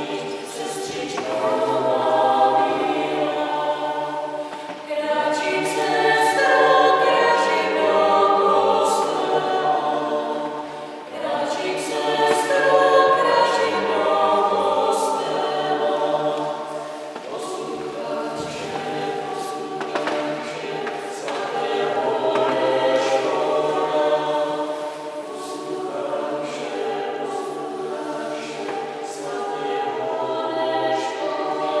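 Small mixed vocal ensemble singing unaccompanied in several parts, holding sustained chords in phrases a few seconds long with short breaks between them, in a church.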